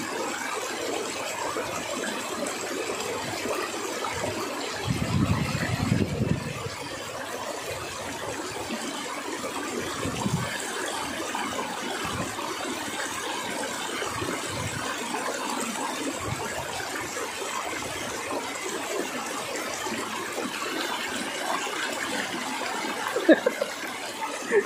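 Shallow river rushing steadily over rocks. Several gusts of wind buffet the microphone, the strongest about five to six seconds in and another around ten seconds.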